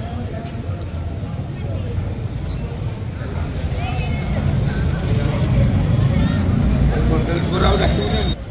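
Outdoor street ambience: a low, uneven rumble, growing louder toward the end, with indistinct voices of people talking nearby.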